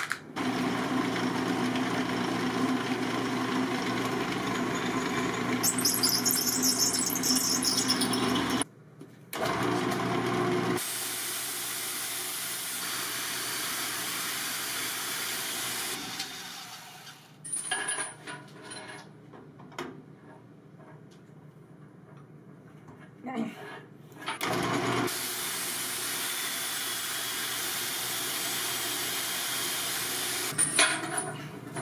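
A drill press spinning a steel round bar while a handheld belt sander is pressed against it, grinding the bar's diameter down. The machines run steadily, with a gritty hiss of abrasion partway through, stop briefly about 9 s in, fall to a quieter stretch with scattered knocks from about 17 to 25 s, then run again.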